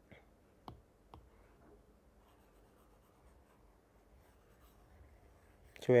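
Faint taps and light scratching of a stylus on a tablet screen while digital whiteboard writing is erased, with a couple of sharp clicks about a second in and otherwise very quiet room tone. A man's voice starts near the end.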